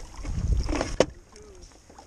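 Wind rumble on the microphone and handling noise from a landing net alongside a paddle board, with one sharp knock about halfway through.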